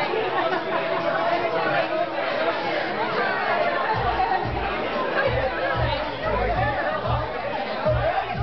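Crowd chatter and babble filling a busy bar. About halfway through, music with a deep, pulsing bass beat comes in under the voices.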